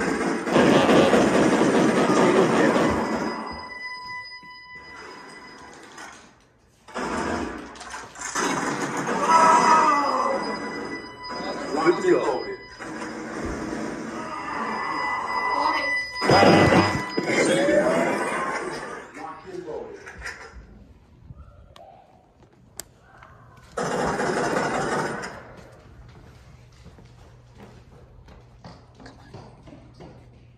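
Laser tag arena din: loud bursts of noise lasting a few seconds each, with steady high electronic tones running through them, mixed with indistinct voices.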